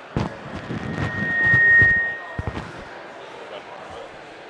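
Headset microphone being handled and repositioned, giving irregular thumps and rubbing noises. About a second in, a single steady high whine of PA feedback swells for about a second and a half, then fades.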